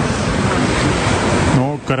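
Small sea waves washing onto a pebble shore, a steady rushing noise mixed with wind on the microphone. A man's voice starts near the end.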